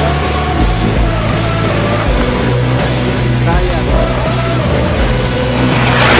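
Background music: a song with a vocal line over a steady bass that changes note every second or so.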